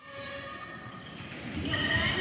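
Live sound of a handball training in a large, echoing sports hall, with several drawn-out high squeaks over a steady din. It grows louder about a second and a half in.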